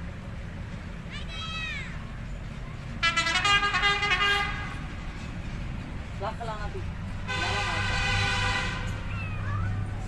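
Two long honks of a vehicle horn, starting about three and about seven seconds in, each held for over a second. A short rising-and-falling call comes about a second in, over a steady low rumble.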